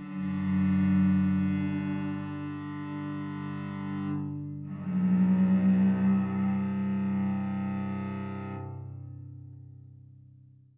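Cello intro music: two long, low bowed notes, the second fading away near the end.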